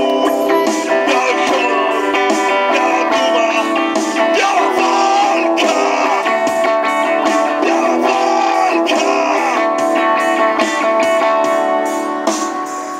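Electric guitar strummed live through PA speakers, over a steady beat of sharp percussion hits.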